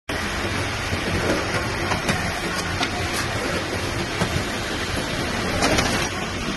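Friction card feeder and paper banding machine running: a steady mechanical hiss with irregular sharp clicks as the cards are fed and pushed along the conveyor.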